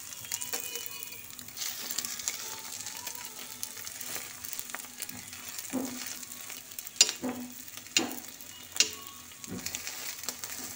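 Egg-coated bread slices sizzling in oil on a flat iron pan (tawa), with a steel spatula scraping and pressing against the pan. Three sharp knocks of the spatula on the pan stand out in the second half, the first the loudest.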